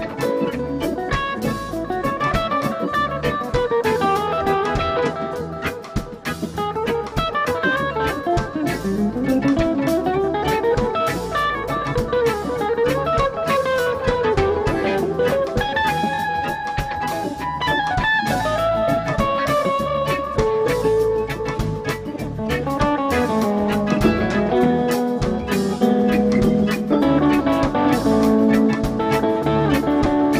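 A live jam band playing an instrumental passage: a lead guitar line with bending notes over bass and drum kit.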